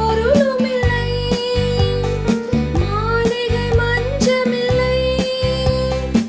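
A woman singing a solo song over a recorded backing track with a steady beat and bass, holding long notes with slides between them.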